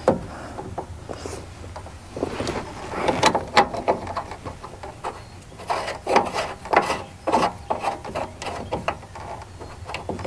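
Ignition switch and its fittings being worked into the dash of a 1968 Chevrolet panel truck by hand: irregular small clicks, knocks and scraping of metal parts.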